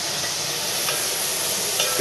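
Chopped vegetables sautéing in olive oil in a pot, sizzling steadily while a wooden spoon stirs them.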